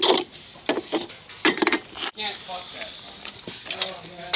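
Indistinct voices, with a few short sharp clicks and knocks about a second in as a beer can is handled.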